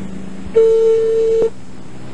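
Telephone ringing tone heard down the line: one steady beep lasting about a second, the ringback a caller hears while the called phone rings. It ends with a small click, over a faint steady line hum.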